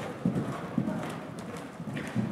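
A pony cantering on soft sand arena footing, its hooves giving dull, irregular hoofbeats.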